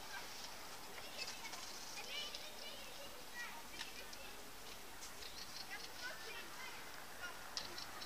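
Faint outdoor ambience with distant birds calling: short, scattered calls that come and go, and a couple of sharp clicks near the end.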